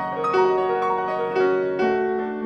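C. Bechstein concert grand piano being played: a flowing line of single notes, a new one every quarter to half second, with earlier notes held and ringing on beneath.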